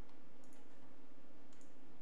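A few faint clicks from a studio computer's keyboard or mouse, about half a second in and again near one and a half seconds, as music is being cued up. A steady low electrical hum runs under them.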